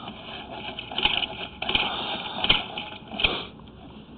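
Irregular rattling and clicking from a sewer inspection push camera's cable and equipment being worked, with a few sharper knocks scattered through it.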